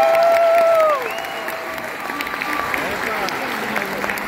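Audience applauding after a song, with a voice holding one long call over the first second.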